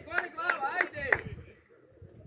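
A voice in short rising-and-falling notes over sharp claps, about three claps a second, which stop about a second and a half in.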